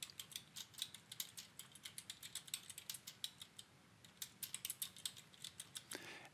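Faint typing on a computer keyboard: a quick run of key clicks as a search phrase is typed, with a short pause a little past the middle.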